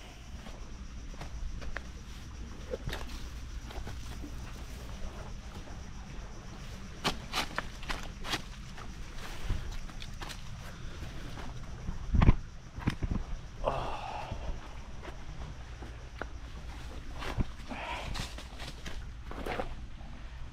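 Footsteps of a hiker on a leaf-covered dirt trail, an irregular run of crunches and scuffs, with one louder thump about twelve seconds in.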